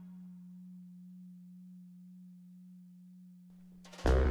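The last held low note of a big-band arrangement fading slowly as the song ends, with faint overtones above it. It cuts off just before the end, as the next song's band comes in.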